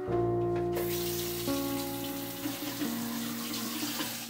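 Shower water running, starting suddenly about a second in, under soft piano music.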